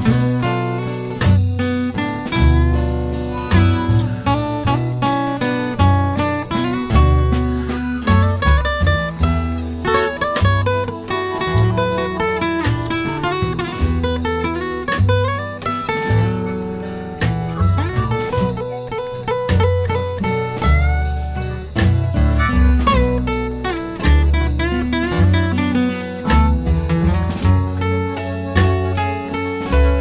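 Blues band playing an instrumental stretch with no singing: guitar over bass and drums keeping a steady beat.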